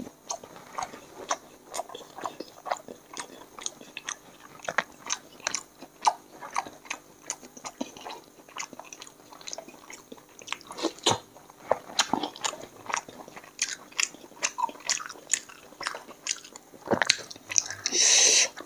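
A person chewing and smacking their lips on a meal of chicken curry, puri and biryani eaten by hand: an irregular run of short wet clicks and smacks, several a second, with a few louder smacks near the middle and toward the end.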